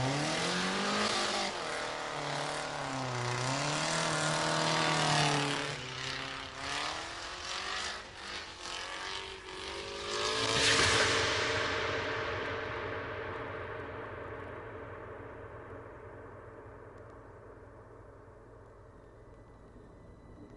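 A car engine revving hard under acceleration, its pitch climbing and dropping, followed by a rolling crash: a run of knocks and then a loud impact about eleven seconds in as the stunt car rolls over onto its roll-cage-reinforced roof corner. The noise then fades away slowly.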